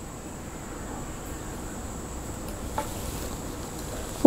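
Steady low background noise with a faint high-pitched whine and a low hum, with one light click near the end.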